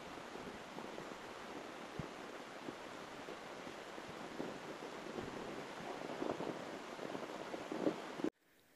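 Steady wind rushing over an open mountainside, with a few soft thumps scattered through it and more of them toward the end.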